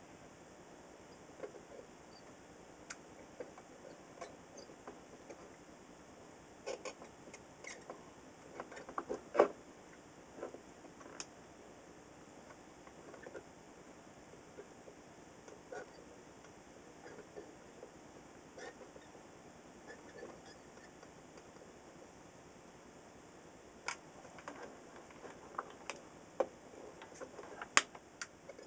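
Scattered small clicks and scrapes of a screwdriver against an old circuit board and its components as they are pried and worked loose during desoldering, with a cluster about a third of the way in and another near the end.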